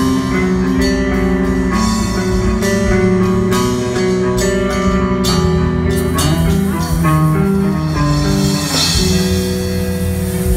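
Live band music: an electric guitar carries the melody over keyboards and a drum kit keeping a steady beat. In the second half the guitar line bends up and down in pitch.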